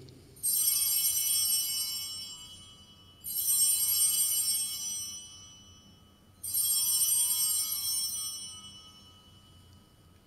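Altar bells (Sanctus bells) rung three times, about three seconds apart, each ring bright and high and fading away over a couple of seconds. They mark the elevation of the chalice just after the consecration.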